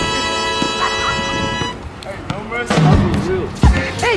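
Background music with a held chord that cuts off suddenly a little under two seconds in. After it, a basketball bouncing on an outdoor court, a few low thuds, with short high squeaks between them.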